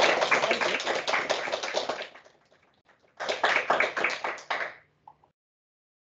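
Audience applauding: a burst of clapping that fades out after about two seconds, a second burst of clapping about a second later, then the sound cuts to dead silence.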